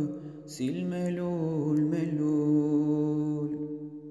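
A male singer holding one long sustained note at the close of a Turkish folk song (türkü), breaking briefly about half a second in and then fading near the end.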